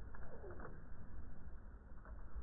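A bird's short low call: a note falling in pitch about half a second in, over a steady low rumble.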